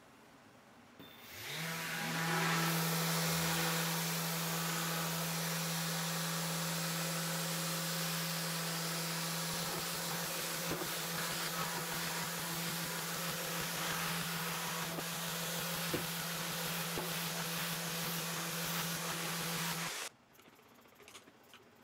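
Random orbital sander with a dust-extractor hose, sanding rust off a cast iron table saw top with wood sandpaper. About a second in it winds up to a steady motor hum with a hiss, runs evenly, and cuts off suddenly at the end.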